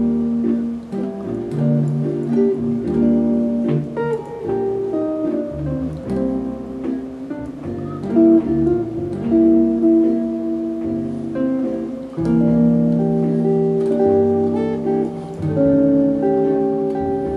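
Ibanez GB10 hollow-body archtop electric guitar played solo through a Polytone Mini Brute amplifier, in a chord-melody style: a single-note melody over sustained chords and bass notes.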